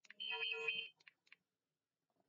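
A short steady tone of several pitches at once, lasting under a second, with a few faint clicks around it.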